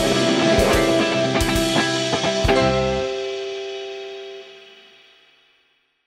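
Closing bars of a rock song with electric guitar and drums: a few last drum hits, then the bass drops out about three seconds in and a final held chord rings out and fades away.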